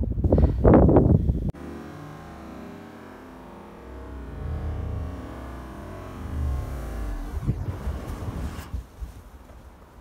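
A thick slab of snow sliding off a barn roof: a low rumble that builds over several seconds, then a loud rushing crash as it lands in a heap about three-quarters of the way through.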